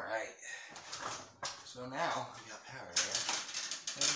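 A man's voice making sounds without clear words, with a burst of handling clatter about three seconds in.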